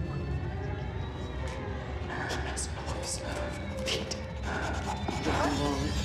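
Low, steady ominous drone of a horror film score, with a woman's unintelligible muttering coming in about two seconds in.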